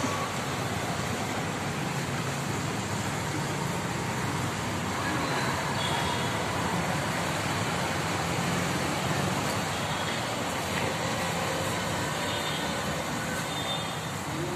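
Steady background road-traffic noise, a continuous even rumble and hiss with no distinct events.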